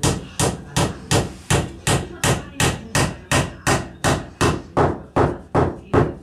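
A small hatchet striking a wooden roof beam with a quick, even run of sharp blows, nearly three a second, about seventeen in all. The blows stop right at the end.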